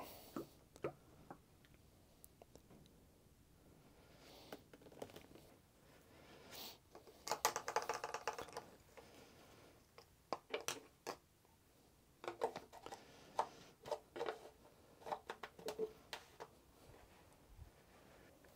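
Faint, scattered clicks, taps and scrapes of a plastic oil bottle and funnel being handled at an engine's oil filler, with a busier run of handling noise about halfway through as the funnel is lifted out and the filler cap put back.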